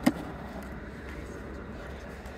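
A single sharp click just after the start, then steady quiet background noise.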